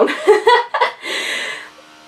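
A woman chuckling: a few short voiced laughs, then a breathy laughing exhale about a second in that fades away.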